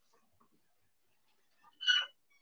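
A rooster crowing briefly near the end, high-pitched and loud over otherwise near silence, with a few faint ticks of meat being handled on a cutting board earlier.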